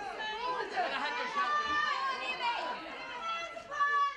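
Several voices calling and shouting across a sports pitch during play, overlapping one another with no clear words.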